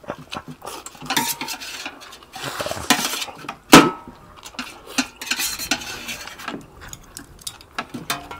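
Rice vermicelli being slurped fast in noisy rushes, with chopsticks clicking and scraping on metal platters. One sharp clatter of metal on a plate, about four seconds in, is the loudest sound.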